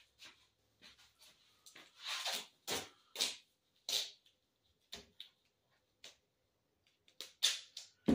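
Duct tape being pulled off the roll in strips and torn, heard as short, irregular noisy bursts.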